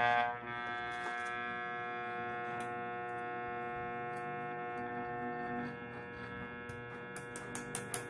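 Homemade armature growler tester running on 220-volt mains: a steady electrical hum made of several tones, with an armature seated in its core. The hum drops slightly about five and a half seconds in, and a few light clicks come near the end.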